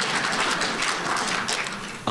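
Audience applauding, tapering off slightly near the end.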